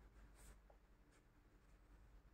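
Very faint scratching of a pen writing on the paper of a notebook: a few soft, short strokes.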